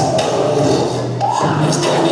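Dance music played over PA loudspeakers in a large open hall, loud and continuous, with a rhythmic high percussion part.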